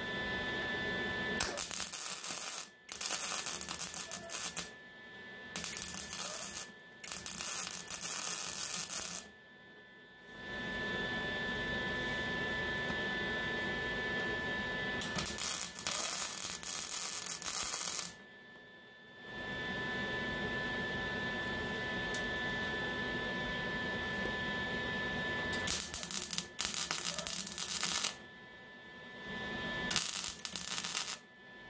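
MIG welder arc buzzing and crackling in about eight bursts, some under a second and others five or six seconds long, with short pauses between, as a steel patch is tack- and stitch-welded into a car body panel. A faint steady high-pitched hum runs underneath.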